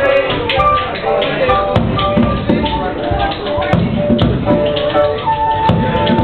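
Tap shoes striking the floor in quick, uneven rhythms over a live flute and piano; the flute holds a long note near the end.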